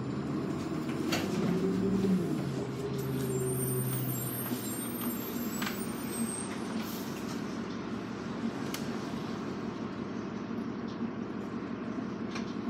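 New Flyer D40LF diesel transit bus engine heard from inside the cabin, running at low speed. Its note rises about two seconds in and settles back by about five seconds, with a few sharp clicks and a faint high whine.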